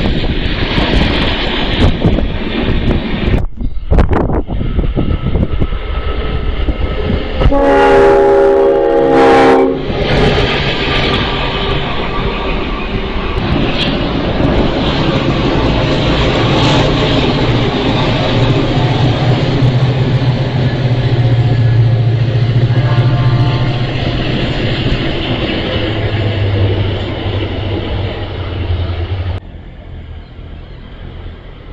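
Diesel freight train passing with rumbling wheel and rail noise, then a diesel locomotive horn sounding a loud multi-note chord for about two seconds. Later a locomotive's diesel engine drones low and steady, with a short faint horn note partway through.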